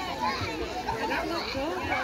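Several children's voices calling and shouting over one another, no clear words.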